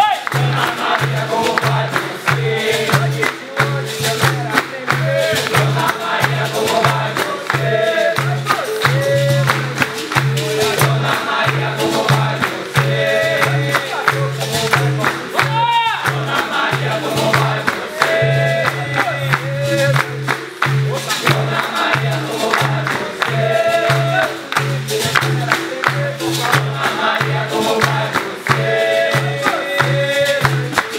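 Capoeira roda music: a group singing over a steady atabaque drum beat, about two beats a second, with berimbaus, a pandeiro tambourine and hand clapping.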